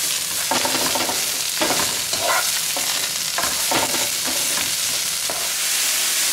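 Sliced mushrooms, bell peppers and leek frying in olive oil in a very hot wok, a steady sizzle, while a wooden spoon stirs and scrapes through them in strokes about every half second to a second.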